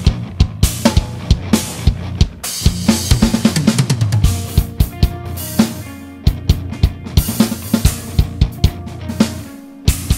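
BFD3 virtual drum kit playing back a groove of kick, snare and cymbals, with a few held pitched notes underneath. The kit's ambient mic bus is compressed, brightened and lightly distorted to give a pumping effect. The low end drops out briefly near the end.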